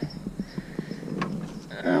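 Light, irregular knocks and clicks of someone shifting about in a plastic kayak, with one sharper knock a little past the middle.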